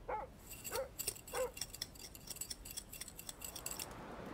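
Three short, high whines from an animal in the first second and a half, over faint, rapid high-pitched clicking that runs on almost to the end.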